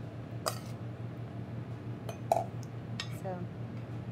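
A few light clinks of a metal spoon against a ceramic plate and a metal mixing bowl as couscous salad is spooned out, over a steady low hum.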